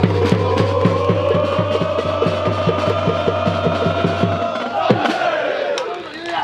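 Football supporters chanting in unison over a drum beating about four times a second; the crowd holds one long shout that swells and then falls away, and drum and voices stop about five seconds in.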